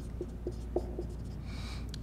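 Dry-erase marker squeaking on a whiteboard in about five short strokes as a number is written, with a brief hiss near the end.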